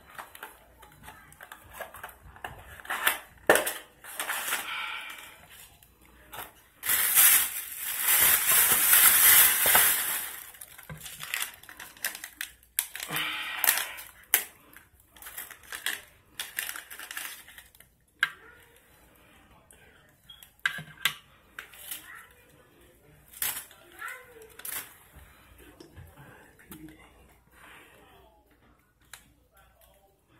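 Pregnancy test packaging handled and torn open by hand: cardboard box and foil pouch crinkling and tearing among plastic bag rustles. There are many short rustles and clicks, with a long loud stretch of crinkling about seven to ten seconds in, quieter near the end.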